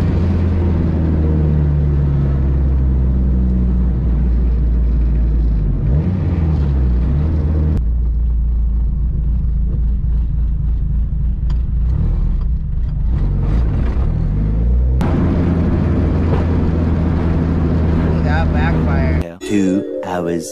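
Dodge Neon SRT-4's turbocharged 2.4-litre four-cylinder running under way, picked up from outside the car, its drone rising and falling with engine speed. The sound jumps abruptly twice at edits. Near the end it cuts to a short clip of a different sound.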